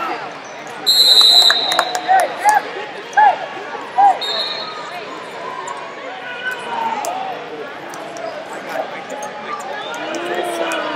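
A loud, shrill blast sounds about a second in as the wrestling period clock runs out: the signal ending the period. A shorter, quieter one follows about four seconds in. Shouts from the crowd come between them, over a steady gym-hall hubbub.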